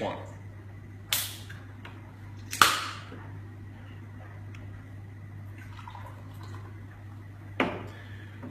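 Ring-pull of an aluminium can of L&P (Lemon & Paeroa) soft drink being opened: a crack and a hiss of escaping gas about a second in, then a second, louder crack and hiss a second and a half later. Faint pouring and fizzing follows, and there is a short knock near the end.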